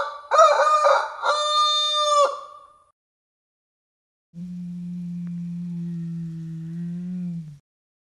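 Three shrill, crowing dinosaur calls in quick succession, then after a pause a low, steady hum held about three seconds as a second dinosaur's voice.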